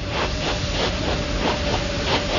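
Steady hissing noise with a faint steady tone running through it and light irregular crackle.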